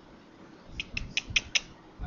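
A quick run of about five or six light clicks within less than a second, starting just under a second in, from someone clicking or tapping at a computer.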